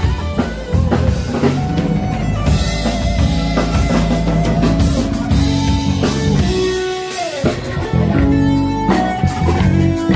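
Live band playing through a PA: electric guitar over a drum kit, with held low notes underneath.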